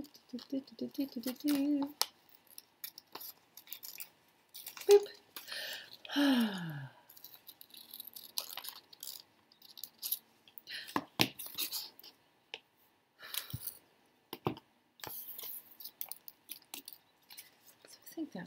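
Paper rustling with scattered small clicks as magazine cut-outs are handled and shuffled. There is a brief hummed murmur in the first two seconds and a falling vocal sigh about six seconds in.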